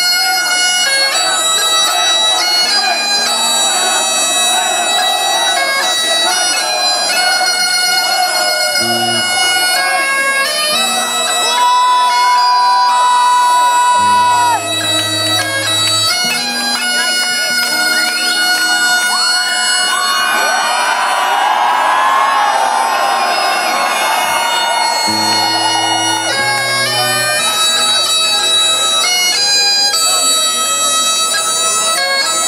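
Great Highland bagpipes played live, stepping through a melody with one long held high note about halfway through.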